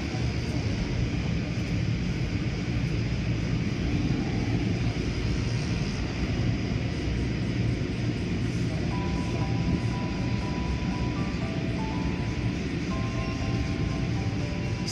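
Automatic car wash heard from inside the car: a steady rumbling wash of rotating cloth brushes and water spray beating on the body and windows. A tune of held notes comes in over it about nine seconds in.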